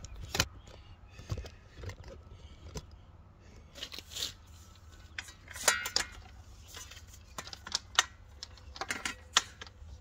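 Solar panel cables and their plastic plug connectors being handled and fitted by hand: irregular small clicks, taps and rattles, with a few sharper clicks in the second half.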